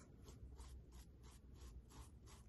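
Faint, repeated scratchy strokes of a flat paintbrush spreading Mod Podge over a canvas sneaker, about four strokes a second.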